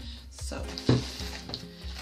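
Handling noise from a plastic liquid-soap bottle being lowered and set down, with a short thump a little under a second in, over background music with a steady low beat.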